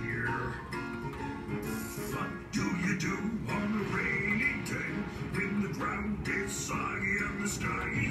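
Instrumental music of the animatronic show's rainy-day song, playing between verses and getting louder about two and a half seconds in.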